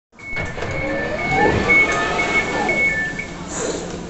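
Elizabeth line (Class 345) train door warning beeps: a quick run of high beeps alternating between two pitches, sounding as the doors are released to open. They stop about three seconds in.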